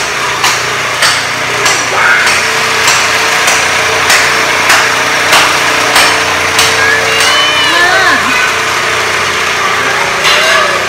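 A small motor running steadily under regular sharp knocks, about three every two seconds, from tool work on the gutted, flood-damaged floor.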